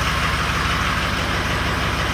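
Ford Super Duty's Power Stroke diesel engine idling steadily shortly after a cold start, running smoothly with the fuel-pressure fault not showing.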